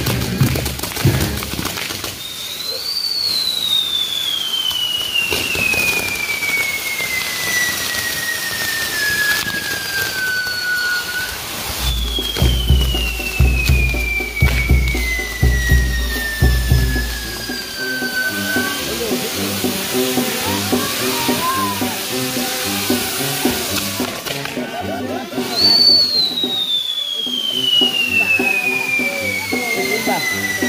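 A fireworks castillo burning: a steady hiss of sparking fountains and spinning wheels, with three long whistles that each slide down in pitch over several seconds, near the start, in the middle and near the end. Music plays underneath.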